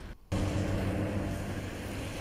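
Steady outdoor city background: a low rumble of distant road traffic, starting after a brief dropout about a quarter second in.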